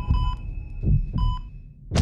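Heartbeat with a heart-rate monitor: two slow, low thumps about a second apart, each followed by a short electronic beep. A brief hush follows, then a loud noisy hit at the very end.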